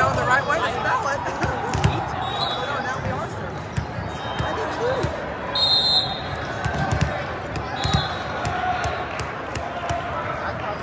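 Background din of a large hall full of volleyball courts: voices chattering and calling out, with volleyballs thudding on the floor now and then. A short, high whistle sounds a little past halfway.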